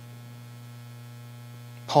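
Steady low electrical mains hum with a fainter higher overtone, unchanging in level; a man's voice begins a word near the end.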